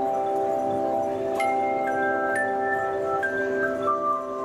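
Aluminium handchimes played by an ensemble, a held chord ringing on while a slow melody of higher notes is struck over it from about a second and a half in, stepping mostly downward.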